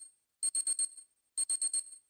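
Alarm-clock bell ringing in short bursts of about five rapid strikes each, roughly one burst a second, with silent gaps between.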